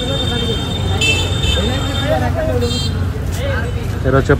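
Busy street-market bustle of voices, with high-pitched vehicle horns tooting over it: one long horn note through the first half, a brighter blast about a second in, and a short toot a little before three seconds in.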